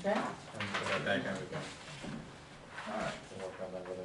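Quiet, indistinct talk between people at a table, in low voices that come and go in two short stretches.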